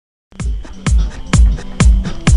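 Background music starting about a third of a second in: an electronic beat with a deep kick drum hitting about twice a second over hi-hats.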